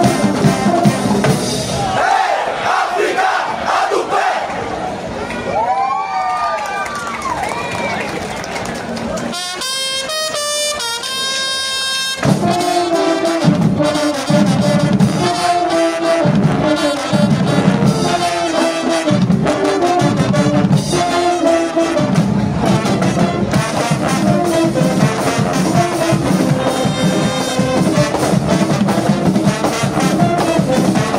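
Brass marching band of trumpets, trombones, euphoniums and sousaphones playing. A softer stretch with sliding, wavering pitches comes about two seconds in. The full band comes back in about twelve seconds in with loud, pulsing chords.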